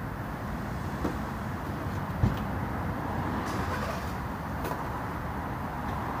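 Steady low rumble of urban outdoor background noise, like road traffic, with a few faint clicks and one sharp thump about two seconds in.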